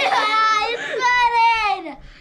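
A child's voice wailing in two long, drawn-out cries, the second sliding down in pitch near the end.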